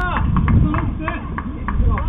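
Several people's voices calling out, with no clear words, over a steady low rumble.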